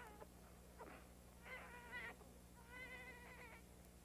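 An infant fussing faintly in a few short, high cries, the last one the longest, over a low steady hum.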